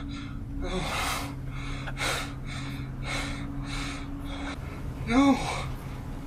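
A man gasping and breathing hard in distress, a run of sharp breaths about every half second, then a short voiced cry about five seconds in.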